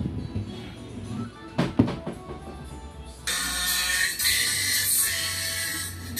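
Music played through a compression-driver horn tweeter wired with a 2.2 µF series capacitor, which blocks the low frequencies so only the treble reaches the driver. It cuts in suddenly about three seconds in, after a couple of handling knocks, and sounds thin and treble-heavy.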